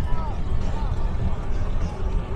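Faint voices of people chatting at a distance, over a steady low rumble.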